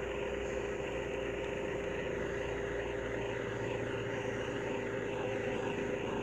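A steady mechanical drone with a constant humming tone, unchanging throughout.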